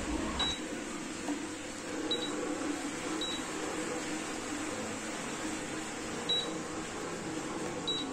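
Inhemeter CIU keypad beeping as prepaid token digits are keyed in one at a time: five short, high beeps at uneven gaps of one to three seconds, each marking one digit entered. A steady low background noise runs underneath.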